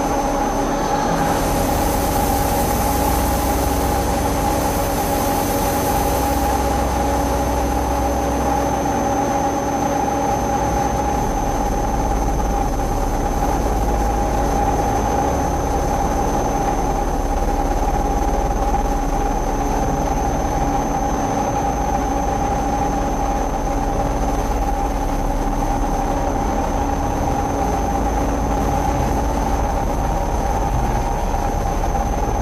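Experimental drone-noise music: several held tones over a steady rumble and hiss, unbroken throughout. A brighter hiss swells in about a second in and fades by about six seconds.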